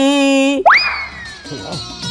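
A held sung note ends about half a second in. It is followed by a comic 'boing'-style sound effect: a quick upward swoop into a high tone that slowly slides down over the next second and a half.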